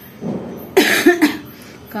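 A woman coughs twice in quick succession about a second in, after a short intake of breath.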